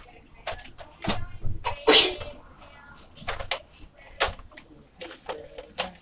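Irregular plastic knocks, clicks and rustling of handling: a Nerf blaster being moved about while the phone filming it is shifted and set back in place, with a short rustle about two seconds in.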